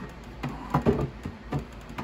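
A few light plastic knocks and scrapes as the yellow cover of an Anycubic Wash & Cure station is set down over the wash tank and seated on the base.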